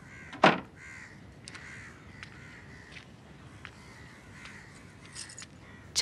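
A single short, harsh crow caw about half a second in, then faint scattered clicks over low background.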